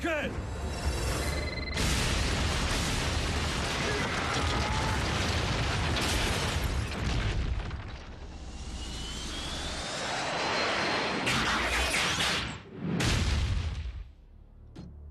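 Cartoon battle sound effects: a long stretch of explosion noise and booms over dramatic score music, with a short cry at the very start. A rising whine runs through the middle, and the noise drops away sharply near the end.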